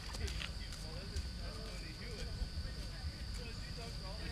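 Faint, distant voices over a low rumble, with a steady high-pitched tone running underneath.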